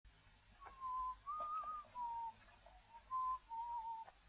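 A man whistling a short, unhurried tune through pursed lips, about six clear notes wavering slightly in pitch, one of them noticeably higher than the rest.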